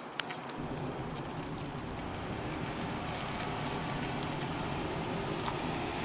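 Chevrolet Uplander minivan driving slowly past at low speed, its engine and tyres a low, steady rumble that builds slightly as it comes closer.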